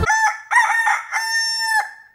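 A rooster crowing once, cock-a-doodle-doo: a few short notes, then a long held final note that drops in pitch and cuts off near the end.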